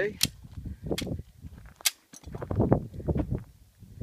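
Two pistol shots from a semi-automatic handgun, sharp cracks about a second and a half apart, the first just after the start.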